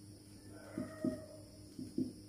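A marker writing on a whiteboard, heard as a few short, separate strokes. About half a second in, a faint, drawn-out pitched call sounds under the strokes for just under a second.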